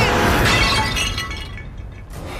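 A porcelain vase smashing over a person's head: a loud crash of breaking ceramic with shards clinking, fading over about a second and a half.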